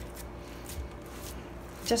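Faint, soft squishing as hands press raw ground-beef meatloaf mixture down into a stainless steel pot, over a faint steady hum.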